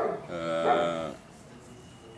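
A dog whimpering once: a single drawn-out cry, fairly steady in pitch, lasting under a second.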